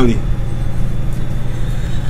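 Steady low rumble of background noise, with the end of a spoken word at the very start.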